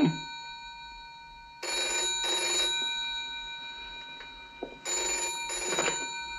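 Telephone bell ringing in the British double-ring cadence for an incoming call: two ring-rings about three seconds apart, the bell's tone dying away slowly after each.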